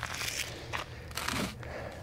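Hands scooping and scraping gritty wet sand-and-cement mud against the sides of plastic buckets: two short scrapes about a second apart.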